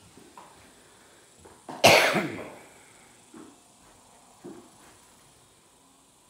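A person coughing once, close to the microphone, about two seconds in, followed by a few faint small knocks.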